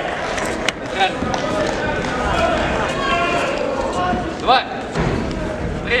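Several people shouting and talking at once around a kickboxing ring, with a sharp knock under a second in and a short rising shout about four and a half seconds in.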